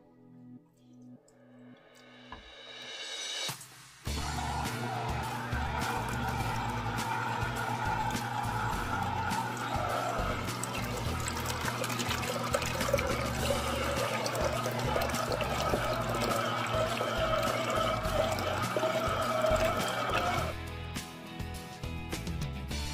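Fresh juice pouring in a steady stream from a slow juicer's spout into a glass pitcher. It starts about four seconds in and stops near the end.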